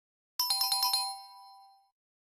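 Quiz answer-reveal chime sound effect: a quick run of about six bright bell-like notes starting about half a second in, the last two tones ringing on and fading away.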